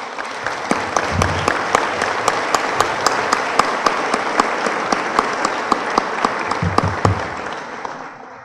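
Audience applauding, with one person's claps close to the microphone standing out sharply at about four a second. The applause tails off near the end.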